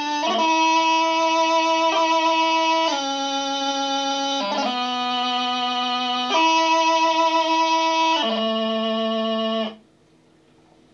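Bagpipe practice chanter playing a slow piobaireachd phrase: long held notes, each change joined by a quick grace-note flick, settling on a low note and stopping abruptly just before the end.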